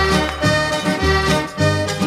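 Instrumental break in a gaúcho trova duet: piano accordion playing over guitar accompaniment, with a steady, regular bass beat.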